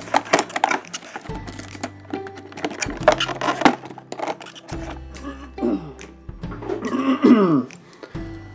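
Crinkling and clicking of a clear plastic blister tray as a small toy gun and other accessories are worked loose from it, over background music.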